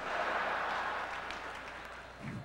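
Large audience applauding and laughing, starting at once and slowly dying down.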